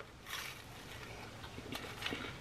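Faint crunch of a bite into a crisp toaster grilled cheese sandwich, a short click followed by a soft crackle, then quiet chewing with a few small ticks near the end.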